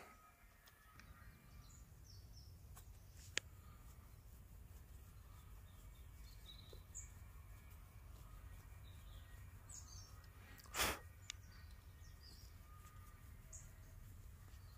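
Near silence outdoors, with faint bird chirps. There is a single sharp click about three seconds in, and a short burst of rustling noise, the loudest sound, just before eleven seconds.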